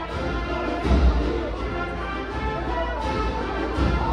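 Brass band playing a slow processional march, held brass chords over low bass drum strokes, one about a second in and another near the end.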